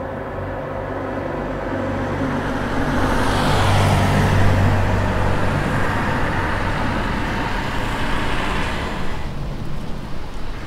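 A car passing close by: its engine and tyre noise swell up to a peak about four seconds in, then fade away as it moves off.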